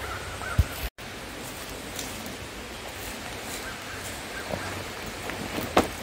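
Faint steady outdoor background noise with no speech. There is a single click near the start and a brief dead gap about a second in where the recording is cut.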